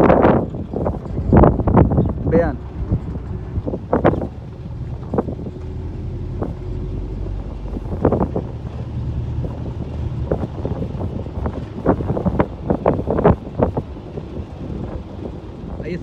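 A car moving slowly over broken, potholed asphalt: a steady low engine and road rumble with wind on the microphone, and many short, sharp sounds scattered through.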